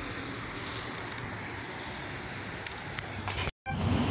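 Steady outdoor street background picked up by a phone's microphone: a low hum with even hiss, a few faint handling clicks near the end, then the sound drops out for a moment.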